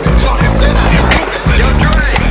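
Skateboard trucks grinding a ledge and wheels rolling on concrete, mixed over a loud music soundtrack with a steady bass line.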